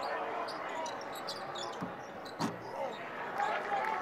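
A basketball being dribbled on a hardwood court over the steady noise of an arena crowd, with one sharper knock about two and a half seconds in.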